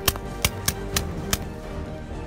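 Five suppressed .22 pistol shots in quick, uneven succession within about a second and a half, over background music.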